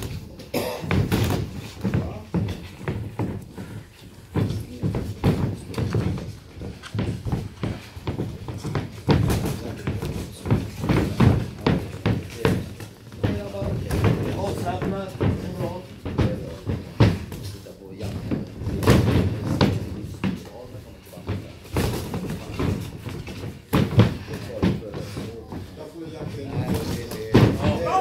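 Boxing gloves landing punches in an amateur bout: irregular slaps and thuds throughout, with voices calling out from around the ring.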